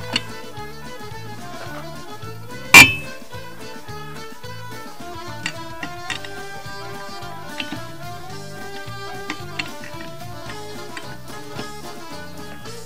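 Background music plays throughout, with one loud, sharp metallic clank about three seconds in and a few faint clicks later: a lug wrench knocking against the wheel while lug nuts on a spare tire are tightened.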